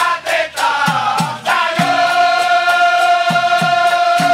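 Dikir barat chorus of men singing together in unison, holding one long note from about a second and a half in. Regular hand-clapping and drum beats keep the rhythm underneath.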